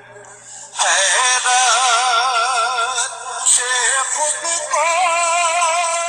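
An Urdu naat sung by a solo voice, held notes wavering with vibrato. It is quiet for the first moment and the singing comes in just under a second in.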